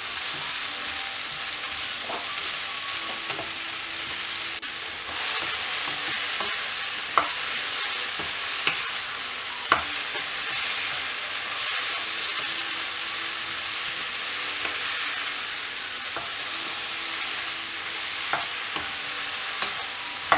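Sliced mushrooms frying in oil in a nonstick pan, stirred with a wooden spatula: a steady sizzling hiss with a few sharp knocks of the spatula against the pan.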